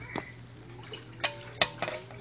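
A shovel being laid down on the floor: a light knock near the start, then a few sharp clinks in the second half, one with a brief metallic ring, over a low steady hum.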